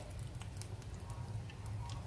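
A lump of butter melting in a hot frying pan, sizzling faintly with scattered small crackles over a low steady hum.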